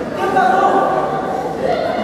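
Several voices singing a held note together for about a second, with speech around it, in a large hall.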